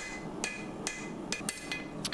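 A hand hammer striking a red-hot Damascus steel bar on an anvil: about six blows at roughly two a second, each with a short metallic ring. The blows knock back the corners of the bar to make it round for twisting.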